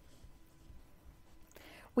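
Near silence: faint room tone, with a short soft breath intake near the end.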